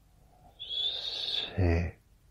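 A man's low, breathy voice drawing out a single word, the next number in a slow hypnotic countdown: a long hissing stretch, then a short, louder voiced sound near the end.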